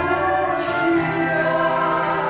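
A woman and a man singing an old Russian romance in harmony, with sustained notes over acoustic guitar accompaniment.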